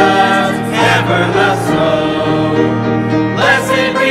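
A choir singing a hymn with instrumental accompaniment, the voices holding sustained notes.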